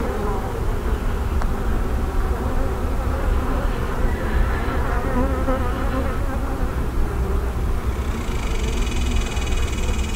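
Steady hum of many honey bees flying around an opened brood chamber during a hive inspection, with a higher hiss joining near the end.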